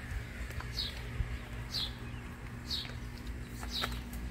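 A bird calling, one short downward-sliding chirp about once a second, over a steady low hum. A single light knock about a second in.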